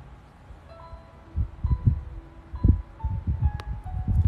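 Soft background music of long, held chime-like notes that change pitch every second or so, with several dull low thuds in its second half.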